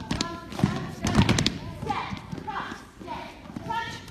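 Dancers' feet thumping and stepping on a stage floor, several quick footfalls in the first second and a half, with voices talking over the second half.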